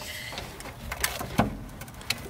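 Ratchet and long 19 mm socket working a rusted fuel-line fitting on a fuel filter, giving a few separate metallic clicks and taps; the fitting is rusted on and will not come loose.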